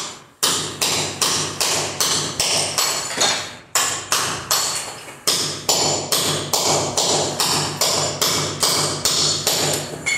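Rapid, evenly paced hammer blows, about two and a half a second, knocking ceramic floor tiles loose from a concrete subfloor.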